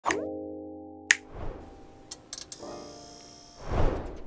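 Animated intro sting of sound effects and music: a pop with a ringing chord that fades, a sharp click about a second in, a few quick clicks and a high tone around two seconds, then another chord and a whoosh swelling near the end.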